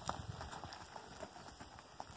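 A pony's hooves trotting on soft, tilled dirt: faint, irregular muffled thuds that fade as the pony moves off.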